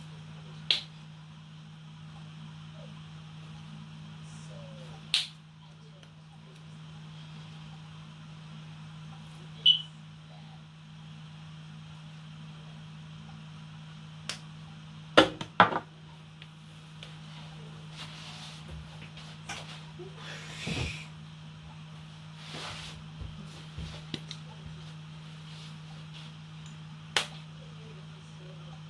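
Scattered sharp clicks and knocks of spice containers and bottles being handled on a kitchen worktop, a few soft rustles among them, over a steady low hum.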